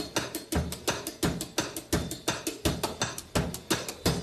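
Electronic drum kit with cymbals played in a steady rock beat: kick drum and snare hits several times a second. Some of the drums are triggered by foot pedals in place of a left arm.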